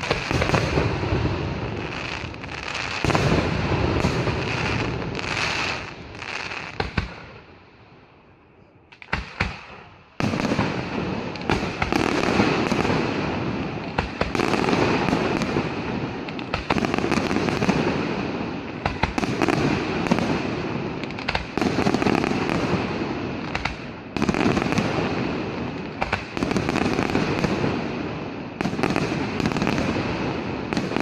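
Aerial firework shells bursting overhead in a dense, rapid run of bangs. It thins to a brief lull about eight seconds in, then resumes as a continuous barrage about ten seconds in.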